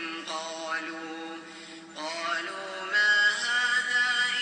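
Male Quran reciter's voice in melodic recitation, stretching the syllables into long held, bending notes; the line grows louder about three seconds in.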